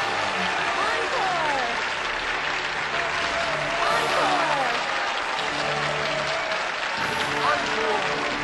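A large theatre audience applauding, with many voices chattering and calling out over the clapping.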